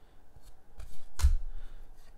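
Cardboard code cards being handled and slid against one another, a light papery rustle and scrape, with one sharp tap a little over a second in.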